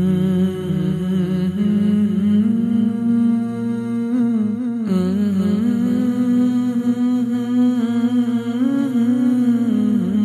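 Wordless hummed vocal music: a voice holding long notes and gliding slowly between them in a melody, with a brief break about halfway through.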